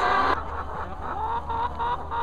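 A flock of young laying hens clucking, many short calls overlapping.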